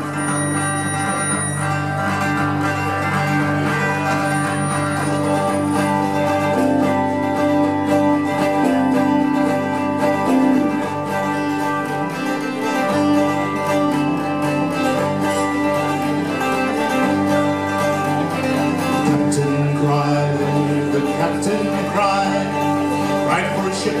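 Live acoustic trio playing an instrumental passage: strummed archtop acoustic guitar, bowed cello and lap-played slide guitar.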